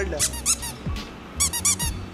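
A small yellow rubber squeeze toy squeaking as it is squeezed. It gives two quick runs of short, high squeaks: one just after the start and one about a second and a half in.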